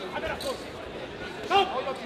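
Voices shouting around a boxing ring, with one short loud shout about one and a half seconds in, over dull thuds from the boxers working in the ring.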